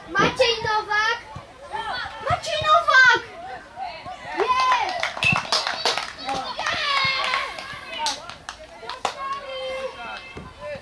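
Boys' high voices shouting and calling out to one another during football play, overlapping through the whole stretch, with a few sharp knocks among the shouts.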